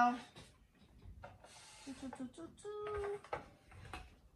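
A woman's short wordless hums and murmurs, one held for about half a second near the end. A brief rustle comes about a second and a half in. No sewing machine is heard running.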